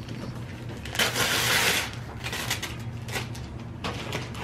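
Wrapping paper being torn off a large gift box: crinkling and crackling throughout, with one longer rip about a second in.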